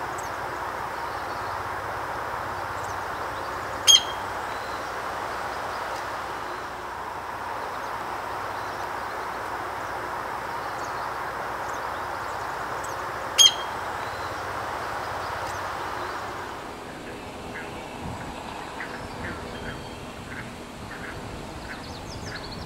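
Two short, sharp bird calls, each a single loud note, about nine seconds apart, over a steady hiss. The hiss fades a few seconds before the end, leaving faint scattered ticks.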